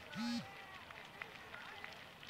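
A short, steady-pitched beep right after the start, the second of a matched pair of beeps, followed by faint outdoor background with a few light clicks.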